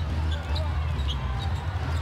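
A basketball being dribbled on a hardwood court, over a steady low arena hum.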